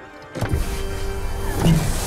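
A held pipe organ chord, then about half a second in a loud rushing whoosh bursts in over it and carries on for about two seconds.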